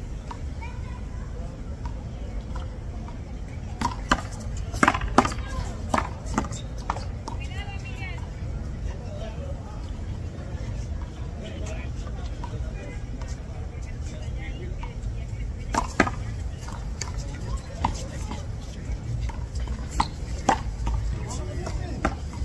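Sharp smacks of a small rubber handball being struck by hand and hitting the wall during a one-wall handball rally, irregular and in clusters, over a steady low background rumble.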